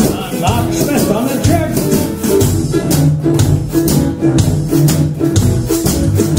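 A jug band playing an instrumental passage: mandolin and acoustic guitars strumming, a blown jug sounding low notes, and a washboard scraped in a steady rhythm.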